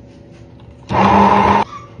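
Corded immersion (stick) blender running in a short burst of under a second, then cutting off suddenly, as it blends egg, avocado oil and lemon into mayonnaise in a glass jar.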